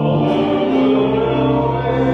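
Church organ playing slow, held chords over a steady low bass note, the harmony shifting a little after the start and again near the end.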